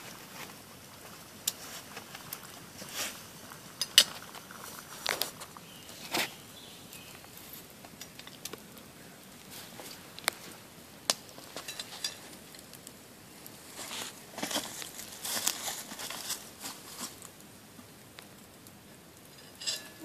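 Small wood campfire crackling, with scattered sharp pops, the loudest about four seconds in. In the second half comes a busier run of rustling and knocks as a metal bottle is lifted from the fire and set down on a log.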